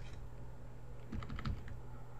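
Computer keyboard keys pressed in a quick run of soft clicks about a second in, over a faint low hum.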